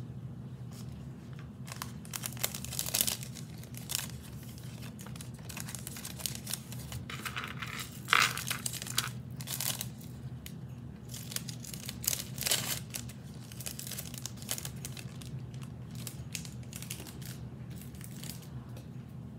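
Hands handling jewelry and a crinkly wrapper on a marble board: irregular rustling and crinkling in bursts, loudest about eight seconds in, over a steady low hum.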